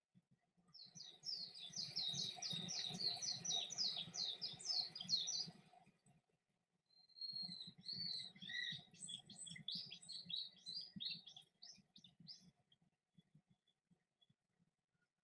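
A songbird singing two long phrases of rapid, repeated high chirping notes, the first starting about a second in and the second around seven seconds in, with a short pause between them.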